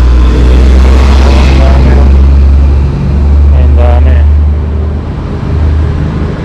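Loud, low rumble of motor traffic on the road alongside, with a vehicle passing during the first two seconds.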